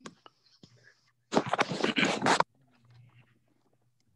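Low steady electrical hum on the meeting's audio feed, broken about a second in by a loud, hissy, whisper-like burst of sound lasting about a second, with a few faint clicks near the start.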